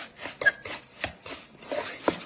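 A metal utensil stirring a crumbly mix of shredded Parmesan, panko breadcrumbs and melted butter in a stainless steel mixing bowl, with repeated short scrapes and clinks against the metal, a few a second.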